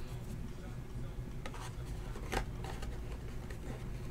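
Faint handling of a trading card and a rigid plastic top loader as the card is slid into it, with a couple of light ticks over a steady low hum.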